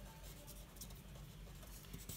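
Faint sound of a marker pen writing a word on paper, in short strokes.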